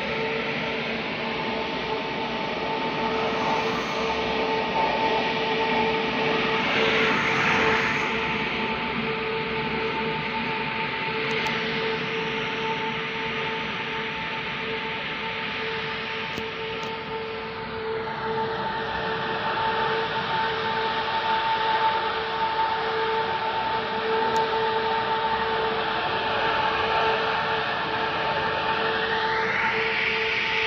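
Huge industrial turbines at a factory running: a loud, steady roar with a constant hum.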